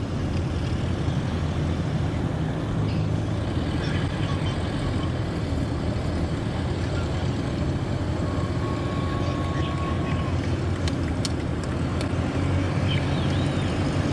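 Several small single-engine propeller planes (Van's RV kit aircraft) taxiing past at low power, their piston engines making a steady, even drone.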